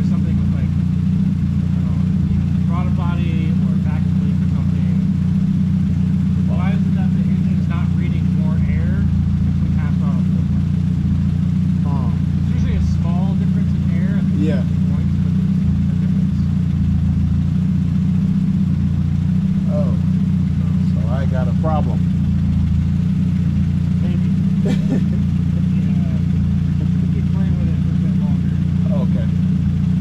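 Toyota 2ZZ-GE 1.8-litre inline-four in an MR2 Spyder running steadily on a chassis dyno, holding an even speed with no revving. Muffled voices talk over it at times.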